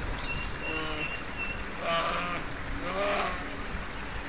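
Wild forest ambience: a steady low rumble with a thin high whistle early on, and three short animal calls about a second apart, the last two the loudest.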